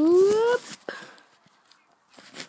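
A boy's voice making a short wordless sound that rises steadily in pitch, like a whoop, lasting about half a second. A few light knocks follow, then it goes quiet.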